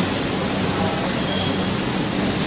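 Steady background noise with a constant low hum, of the traffic or machinery kind.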